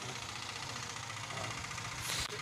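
A motor vehicle engine idling: a steady low hum under street background noise.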